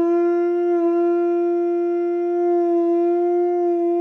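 A hand-held horn blown by a man, sounding one long, loud note that holds steady in pitch and is rich in overtones.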